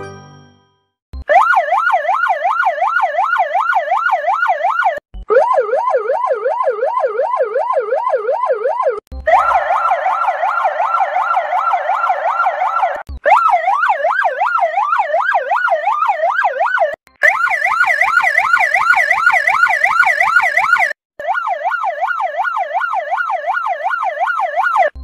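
Police motorcycle siren in a fast yelp, its pitch rising and falling about three times a second. It plays as six edited versions of about four seconds each, separated by abrupt cuts. One version is lower-pitched, one is louder and layered, and one has added hiss.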